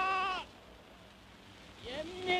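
Archival recording of Mao Zedong proclaiming in Chinese the founding of the central government of the People's Republic. A long, drawn-out, wavering syllable ends about half a second in, followed by a pause, and the speech starts again near the end.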